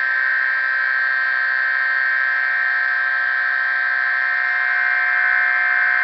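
A Bedini-style magnet pulse motor running steadily at high speed, giving a steady high-pitched whine.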